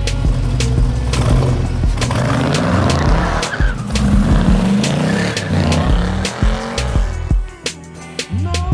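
A car engine revving up and down with tyres squealing, over background music with a steady beat. The engine and tyre noise fades out near the end, leaving the music.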